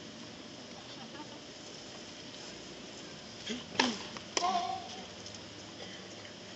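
Murmur of a tennis crowd in the stands. About four seconds in come two sharp tennis-ball strikes half a second apart, the second followed by a brief voice.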